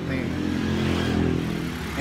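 A small motorcycle passing close by on the street, its engine giving a steady hum.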